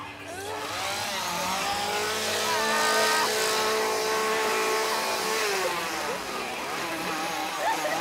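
Petrol chainsaw revved up and held at high revs, dropping back about five seconds in and revving up again near the end.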